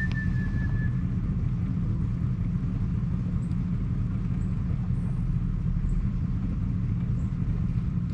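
Outboard motor of a wooden boat running steadily under way, a low rumble with wind on the microphone. A single whistled note, about a second long, sounds at the start.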